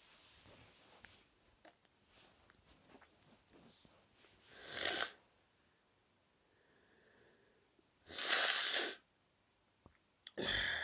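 A boy with a cold sneezing: a rising build-up that breaks off sharply about five seconds in, then a second, longer noisy burst about eight seconds in.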